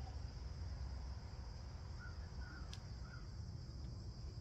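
Faint, steady high-pitched chorus of insects over a low rumble, with a few faint short calls about halfway through.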